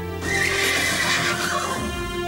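Background music with sustained tones, over which a rough cry starts just after the beginning and falls in pitch for about a second and a half.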